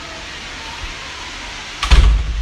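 Steady road noise inside a moving car's cabin: an even hiss over a low rumble. Near the end a sudden loud thump and rumble breaks in.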